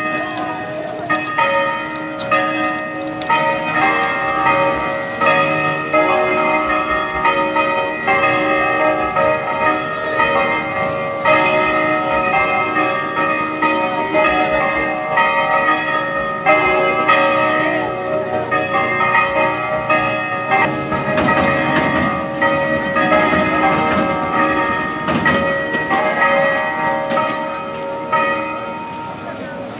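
Church bells ringing a continuous peal, several bells struck in quick succession with their tones ringing over one another.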